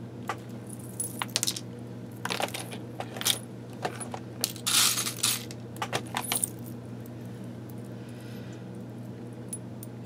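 Small metal trinkets and a ball chain clinking and rattling in a clear plastic storage box as a hand rummages through it, in several short bursts over the first six or seven seconds, the loudest about five seconds in.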